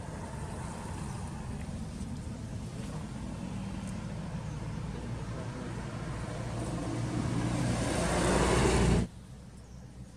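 A motor vehicle running close by, its noise growing steadily louder over the last few seconds as it approaches, then cut off suddenly about nine seconds in.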